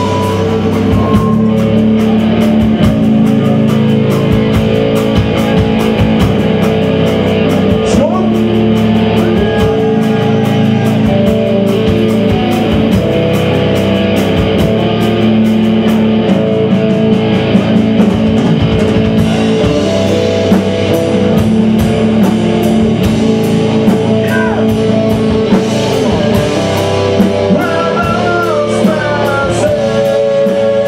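Live metal band playing loud: two electric guitars, bass guitar and drums, with rapid drumming through the first part.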